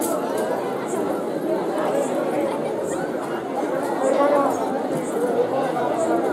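Large crowd chattering, many voices talking over one another at a steady level, with a faint high tick or jingle about once a second.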